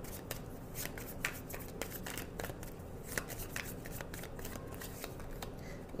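Tarot cards being shuffled by hand: a run of light, irregular clicks and flicks of card on card.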